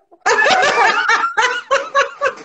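A woman laughing loudly. The laughter starts about a quarter of a second in and comes in a run of short peals.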